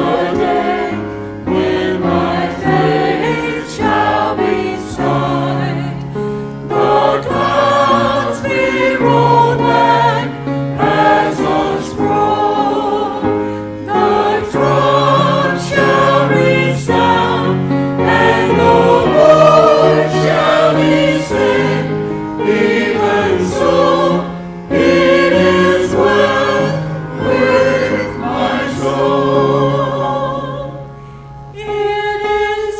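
Mixed-voice church choir singing a hymn, phrase after phrase, led by a woman singing into a microphone.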